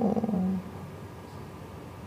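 A man's drawn-out spoken "no" trailing off in a low, creaky voice and ending about half a second in, followed by a pause with faint room tone.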